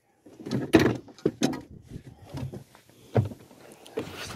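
A string of sharp clicks and knocks, the loudest about three-quarters of a second in, with smaller ones after: handling noise from a phone being moved around while filming.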